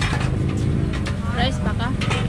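Street noise: a steady low engine rumble from road traffic, with a few short high-pitched voices in the second half.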